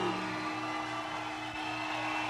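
The end of a live band song: the last sung note has just died away, and a steady low tone from the stage carries on under faint audience noise.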